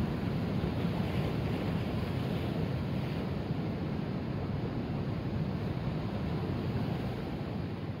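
Sea surf breaking over shore rocks: a steady, even rush of waves and foam.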